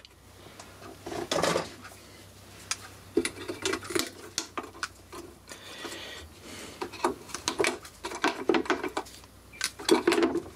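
Scattered small clicks and light metallic taps and rattles of wires being handled and snipped with pliers inside a sheet-metal appliance housing.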